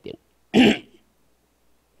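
A man clearing his throat once into a handheld microphone, a short rough burst about half a second in.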